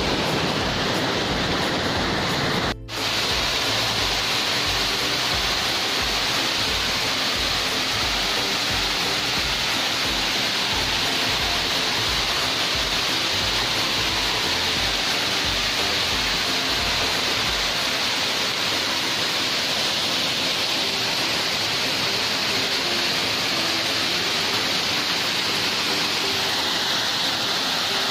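A waterfall's steady rush of water pouring over rocks into a pool, with background music underneath whose low bass pulses for most of the time and then fades out about two-thirds of the way through. The sound cuts out for an instant about three seconds in.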